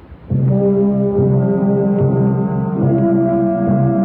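Orchestral closing music for the radio program: loud held brass chords begin about a quarter second in and move to a new chord near three seconds in.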